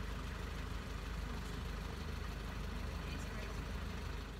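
Steady outdoor background rumble, even in level, with a fast flutter low in the bass.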